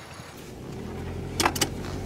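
A car running, heard from inside the cabin as a low steady hum that builds after the first half-second, with two sharp clicks about a second and a half in.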